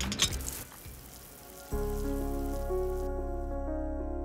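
Outdoor shower running, an even hiss of spraying water. About two seconds in, background music with long held notes comes in, and the water sound fades out soon after.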